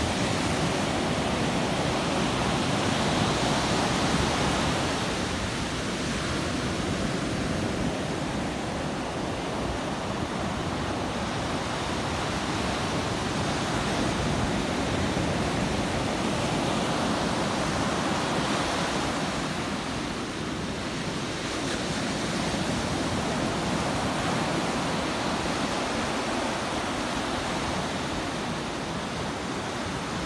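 Ocean surf breaking and washing up a sandy beach, a continuous rush that swells and eases every several seconds as waves come in.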